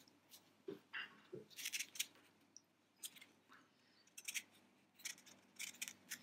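Thin craft wire being wrapped by hand around a wire bird leg: faint, scattered short scratches and clicks of wire rubbing against wire.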